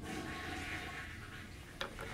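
Quiet room tone with a steady low hum and a faint hazy background, broken by one short click near the end.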